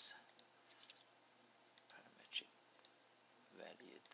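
Near silence with a few faint computer mouse clicks, the loudest a little past halfway.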